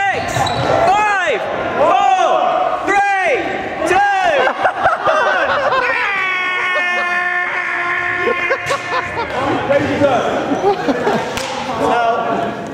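Athletic shoes squeaking on a wooden sports-hall floor as players run and cut, in short arching squeaks about once a second, with players' voices over them.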